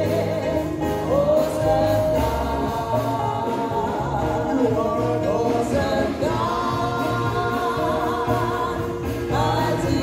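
Gospel praise song: a man singing into a handheld microphone over instrumental accompaniment with a bass line, the melody gliding between held notes.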